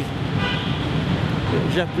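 Steady street traffic noise with a brief horn toot about half a second in; a man's voice resumes near the end.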